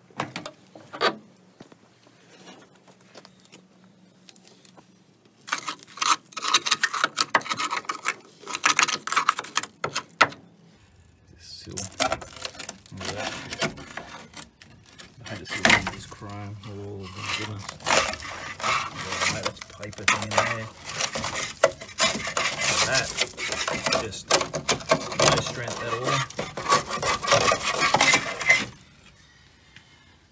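Scraping, rubbing and clattering of the rusted steel body of a Chrysler VG Valiant sedan as its door is worked open and the corroded metal is handled, in two long stretches with many sharp clicks.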